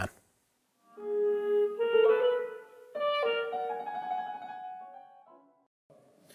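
Clarinet playing a slow phrase of held notes. It begins about a second in and dies away shortly before the end.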